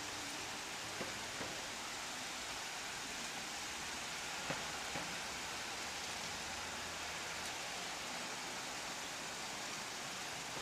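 Steady hiss of outdoor street background noise, with a few faint clicks.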